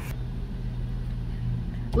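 A 2012 Jeep Patriot's four-cylinder engine idling, heard from inside the cabin as a steady low hum.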